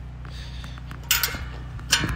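Rusty metal gate being worked: two short scraping noises, about a second in and again near the end, over a steady low hum.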